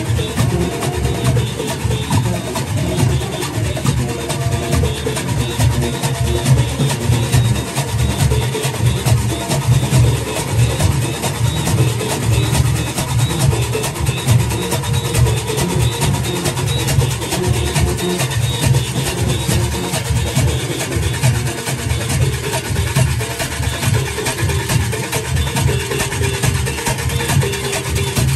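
Junkanoo band practising: goatskin drums beating a fast, unbroken rhythm, with handheld cowbells clanging over them.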